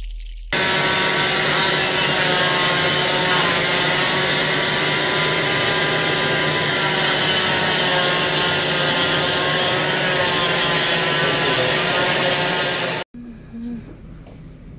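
Electric oscillating cast saw running steadily as it cuts through a cast on the forearm, a high motor whine with a slight wavering in pitch as the blade meets the cast. It starts about half a second in and cuts off suddenly about a second before the end.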